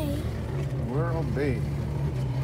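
Motorboat engine running steadily under way, a low drone, with people talking over it.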